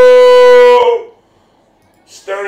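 A man's voice holding one long high sung note, the pitch sagging slightly, cutting off under a second in; then a second of near silence.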